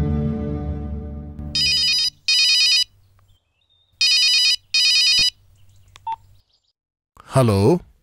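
A phone ringing: short electronic ring bursts in two pairs, the first pair about a second and a half in and the second at about four seconds, after a resonant musical note dies away at the start. A man's voice answers near the end.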